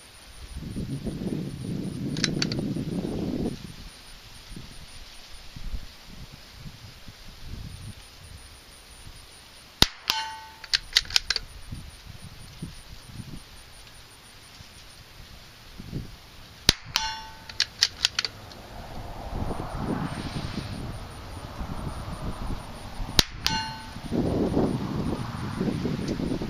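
Three rifle shots fired several seconds apart, each a sharp crack followed by a short metallic ring and a few quick clicks. Rustling handling noise comes near the start and again near the end.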